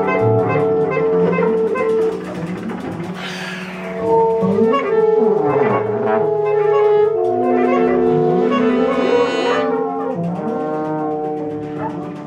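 Small jazz band playing live, with saxophones, trumpet and trombone holding long notes together over the rhythm section. The band drops quieter at about two seconds and the horns come back in louder about four seconds in.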